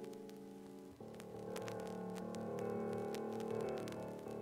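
Solo piano holding soft sustained chords, with a new, fuller chord struck about a second in that grows gradually louder. Faint clicks of the vinyl LP's surface noise sit under it.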